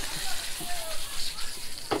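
Fish fillets sizzling in hot oil in a skillet, a steady crackling hiss.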